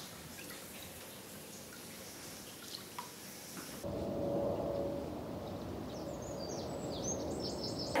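Quiet bathroom sound of water in a filled bath, with faint drips and small splashes. About four seconds in, the background steps up to a louder steady hiss with a low hum under it.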